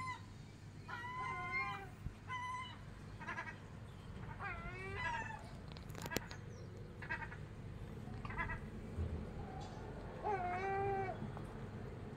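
A string of about eight short, pitched mewing animal calls. Some glide down or rise and level off in pitch, and a few are broken into quick stuttering pulses.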